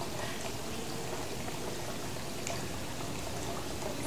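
Steady, even background hiss of outdoor ambience, with no distinct events.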